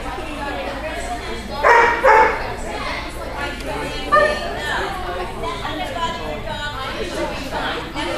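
A dog barks twice in quick succession about two seconds in, over steady background chatter of people.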